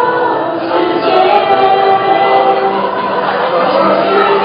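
A student choir singing a graduation song together, many voices holding long sustained notes.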